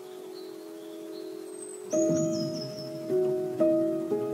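Instrumental background music: held notes, then a new chord struck about two seconds in, followed by single notes roughly every half second.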